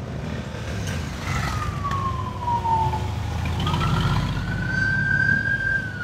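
A siren wailing, one slow tone that falls in pitch, then rises again and holds high, over the steady low rumble of vehicle engines.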